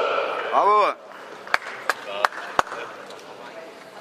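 A man's commentating voice for about the first second, ending in one rising-and-falling call. Then a quiet stretch broken by four sharp clicks.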